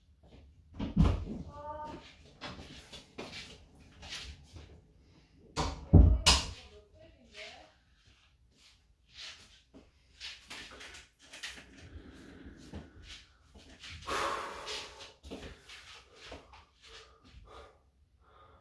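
Thumps, knocks and rustling of a person moving about a small room, with two heavy thumps about a second in and about six seconds in, and a brief squeak just after the first.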